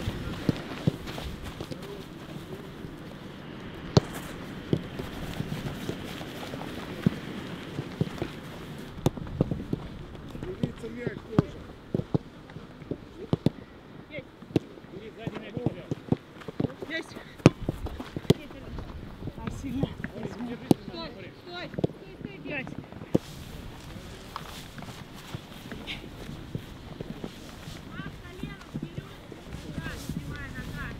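Footfalls of football players running and skipping over a grass pitch in a warm-up drill: irregular sharp steps, some much louder than others, with faint voices in the background.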